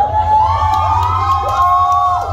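A group of children cheering and shouting, many high voices overlapping in long drawn-out calls, over a steady low hum.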